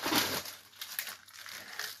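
Plastic packaging of frozen raw dog food crinkling and rustling as a pack is lifted out of a cardboard box, loudest in the first half second and fainter after.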